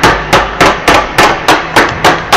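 Hockey sticks struck on the floor in a steady rhythm, about three and a half sharp knocks a second, starting suddenly.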